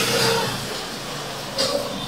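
A pause in a man's talk, filled by steady background hiss with faint music under it, and a brief murmur near the end.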